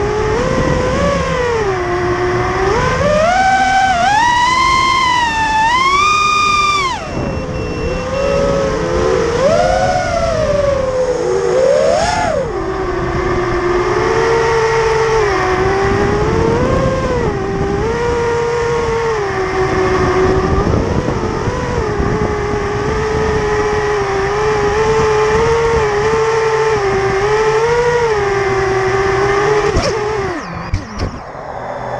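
Onboard sound of an FPV racing quadcopter's four BrotherHobby Returner R5 2306 2650 kV brushless motors and propellers on a 5S battery, a motor whine whose pitch rises and falls with the throttle. It climbs sharply a few seconds in, drops suddenly at about seven seconds, then settles into a steadier, lower whine with small throttle blips.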